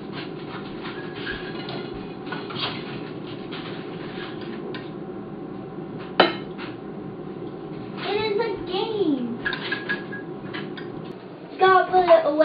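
Tongs and cutlery clinking and scraping against a ceramic plate as food is dished up, with one sharp clack about six seconds in, over a steady low hum. A voice is heard briefly about eight seconds in and again near the end.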